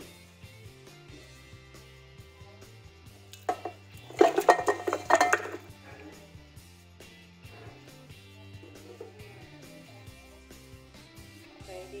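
Beef bones clattering into a slow cooker pot, a burst of hard knocks about four seconds in, over background music with a steady low bass line.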